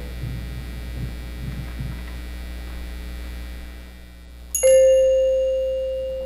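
Steady electrical hum, then a little past halfway a single high note struck on a metal-bar mallet percussion instrument rings out and slowly fades: the opening note of the arrangement's simple melody.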